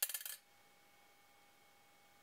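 A small copper coin dropped onto a tabletop, clattering in a few quick bounces and settling within about half a second.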